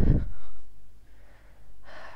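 A feverish, unwell man breathing heavily: a loud exhaled breath trails off at the start, then after a quiet stretch a short, noisy breath comes near the end.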